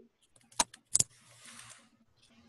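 Two sharp clicks about half a second apart, followed by a brief faint hiss.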